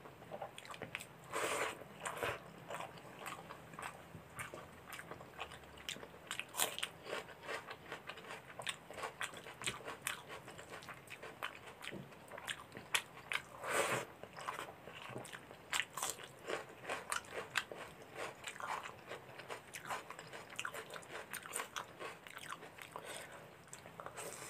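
Close-miked eating of chicken korma and rice by hand: wet chewing and lip-smacking, with irregular clicks and squishes throughout and a couple of louder bursts, one about a second and a half in and one just past the middle.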